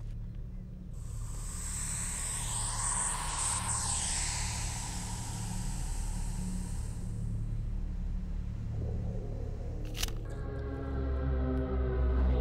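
Dark film score: a low, steady drone with a hissing swell that rises and fades over the first half, a sharp hit about ten seconds in, and a pitched chord building near the end.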